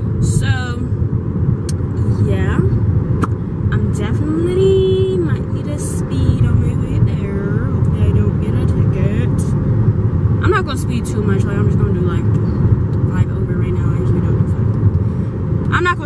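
Speech inside a moving car, over the steady low rumble of road and engine noise in the cabin.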